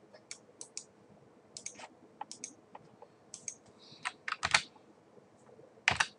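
Computer keyboard typing: scattered, irregular light key clicks, with a quicker run of keystrokes about four seconds in.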